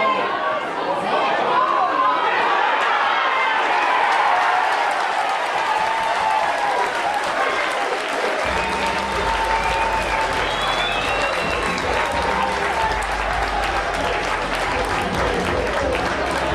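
Rugby league crowd cheering, shouting and clapping for a try just scored. A low rumble joins about halfway through.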